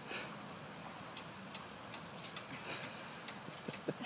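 A West Highland White Terrier and a Yorkshire Terrier scuffling on grass: faint, scattered clicks and soft rustles, with a few short low sounds near the end.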